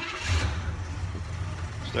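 1967 Chevelle Malibu's 283 small-block V8 cranked by the starter and catching almost at once, then settling into a steady idle. It starts right up on freshly replaced spark plugs and points.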